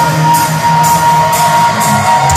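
A live rock band playing loudly. An electric guitar holds a long sustained note with sliding bends over cymbal hits about twice a second.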